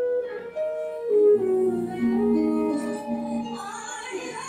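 A woman singing live into a microphone over instrumental accompaniment, with long held notes that step and slide between pitches.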